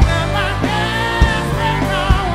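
A rock band playing live, with a lead singer holding long, bending notes over electric guitars, bass and drums. Drum strikes land at the start and again past the middle.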